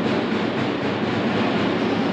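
Steady, loud crowd noise from spectators in a basketball arena during play.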